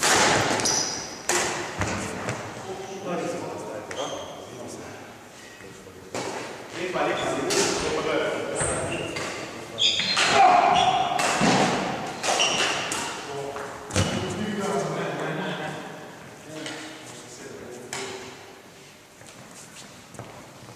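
Badminton rally: sharp racket strikes on the shuttlecock, brief shoe squeaks on the hall floor and players' calls, all echoing in a large sports hall.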